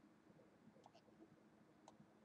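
Near silence: room tone with three faint clicks of a computer mouse, two close together about a second in and one near the end, as the web page is scrolled.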